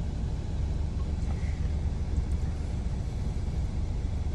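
Steady low rumble of a Ford Mustang convertible idling, heard from inside its cabin.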